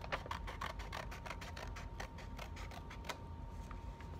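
Scissors snipping through painted paper in quick short cuts, about six or seven snips a second, thinning out to a few scattered snips near the end.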